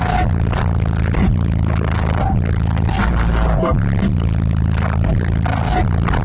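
Loud, bass-heavy music played through a car audio system with a CT Sounds 7000-watt amplifier and Sundown 18-inch subwoofers, heard inside the Jeep's cabin. Deep bass dominates and pulses with a steady beat.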